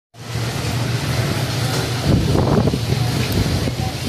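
Strong northeast-monsoon (amihan) wind buffeting the microphone, a steady low rumble with a rushing hiss over it.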